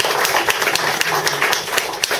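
Audience clapping, a dense patter of many hands, with voices mixed in.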